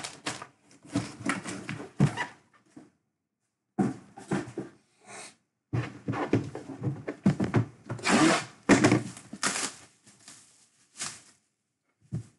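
Plastic wrapping crinkling and a cardboard box rustling in irregular bursts as a plastic-bagged jersey is handled and pulled from its box. The bursts cut off abruptly into dead silence between them.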